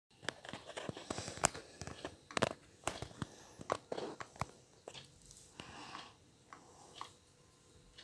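Faint clicks, taps and scratchy rubbing as a paintbrush works white paint onto a small plastic figurine sitting in a paint-smeared plate. The taps come thick and fast for the first half, then thin out to a few scattered clicks.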